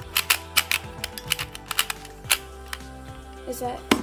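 Plastic novelty pyraminx puzzle clicking as its layers are turned fast by hand: quick clicks through the first two seconds, sparser after, with a louder knock near the end as the puzzle comes down and the timer is stopped. The puzzle is a stiff, badly turning one.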